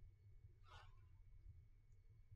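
Near silence: room tone with a faint steady low hum and one brief, soft hiss a little under a second in.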